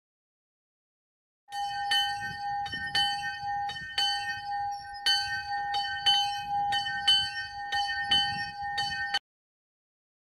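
Small chapel bell rung rapidly, its clapper striking about three times a second over one steady ringing tone. It starts about a second and a half in and cuts off suddenly near the end.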